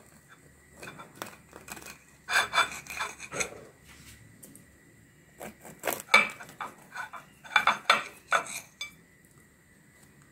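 Steel knife and fork scraping and clinking against a ceramic plate while a serrated knife saws through a glazed donut, in three bursts of strokes.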